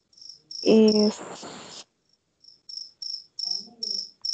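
Steady high-pitched chirping, short even chirps about three times a second, with a brief voice sound and a short rush of noise about a second in.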